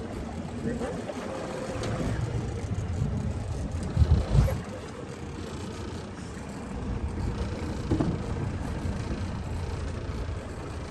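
Boat trolling on open water: steady low rumble of the Suzuki outboard with wind on the microphone, and a strong low gust about four seconds in.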